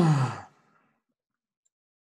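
A man's short voiced sigh, falling in pitch, at the very start and lasting about half a second.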